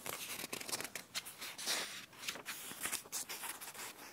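Close rustling and crinkling of paper: book pages being handled and turned, in many quick irregular crackles.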